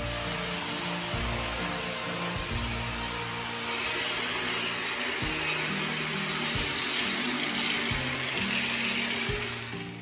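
Steady noise of a woodworking power tool running, growing brighter and a little louder about four seconds in, over background music.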